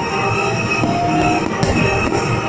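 Fireworks display: a continuous rumble and crackle of bursting shells, with one sharp bang near the end, over background music.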